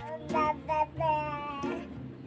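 A young child's high voice in sing-song notes: three drawn-out vocal phrases, the last and longest gliding slightly.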